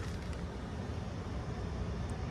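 Steady outdoor background noise with a low rumble and no distinct events, of the kind left by distant traffic around an open car lot.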